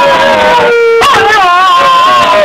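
Wire fox terrier howling in long, wavering, sing-song cries, an excited greeting howl. One howl dies away a little after half a second in and another begins at about one second.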